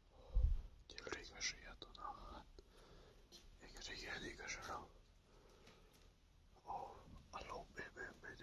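A person whispering in several short hushed phrases, with one dull low thump about half a second in.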